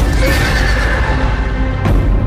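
A horse whinnies over loud orchestral film score, with a sharp hit just before the end.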